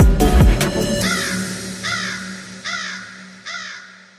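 An electronic music track with deep sliding bass ends about a second in. A bird then calls four times at even spacing, about one call every 0.8 seconds, each call fainter than the last as the sound fades out, over a low steady hum.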